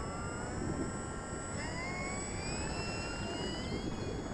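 Electric motor and propeller of a Dynam F4U Corsair RC warbird on its takeoff run and lift-off. The whine climbs steadily in pitch as the throttle comes up and the plane accelerates away, with a second rise partway through.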